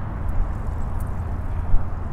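Steady low outdoor rumble with no clear tone or rhythm, and one brief louder bump near the end.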